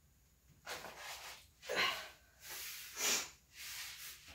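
A person breathing audibly, about five short breaths in and out in quick succession.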